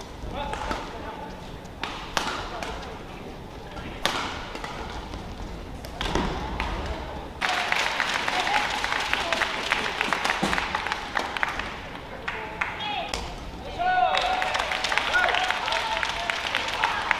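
Badminton doubles rally: sharp racket hits on the shuttlecock and shoe squeaks on the court floor. An arena crowd applauds about halfway through and again near the end as points are won.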